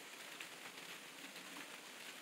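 Light rain falling, a faint steady hiss.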